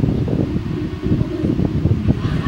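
Steady, dense low rumbling noise, like moving air buffeting the microphone.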